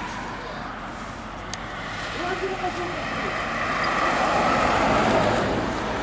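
A car passing along the street, its sound swelling through the second half, with faint voices in the background.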